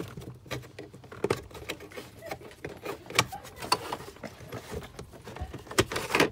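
Hands working the plastic cabin air filter cover behind the glove box of a 2017 Toyota Camry: irregular plastic clicks, taps and scrapes, with sharper knocks about three seconds in and near the end.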